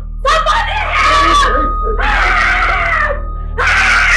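A woman screaming in two long, strained cries for help while being held back.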